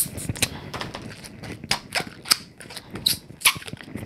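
A short puff of air from a hand balloon pump into a short scrap of black 260 latex balloon right at the start, then the small balloon being squeezed, twisted and knotted by hand, with irregular rubbery clicks and a few brief squeaks.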